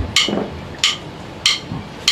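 A drummer's count-in: three sharp, evenly spaced clicks of drumsticks struck together, about one every two-thirds of a second, setting the tempo for the band.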